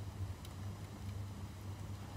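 Quiet room tone: a steady low hum with one faint tick about half a second in.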